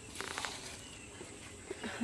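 A pause between spoken lines with only faint outdoor background: a steady, faint high-pitched hiss, and a brief faint rasping sound about a quarter of a second in.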